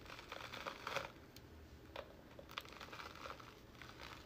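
Faint, irregular crackling and scratching as fingernails pick a mat of hair loose and pull it out of the bristles of a hairbrush.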